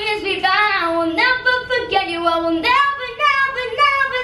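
A boy singing into a microphone, holding long notes that slide from pitch to pitch.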